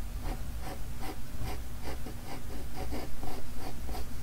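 Pencil scratching on paper in quick, repeated short strokes, several a second.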